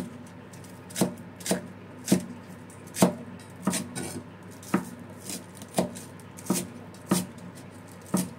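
Cleaver chopping spring onions on a thick round wooden chopping board: sharp knocks of the blade striking the wood, about a dozen at an uneven pace of a little over one a second.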